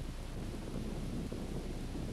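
Steady rushing wind with a low hum underneath.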